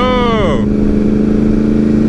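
Sport motorcycle engine held at a steady cruising speed, heard from the rider's seat as one constant hum under steady wind and road noise.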